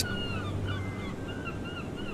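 Birds chirping: a string of short, quick high chirps, several a second, over a faint steady background.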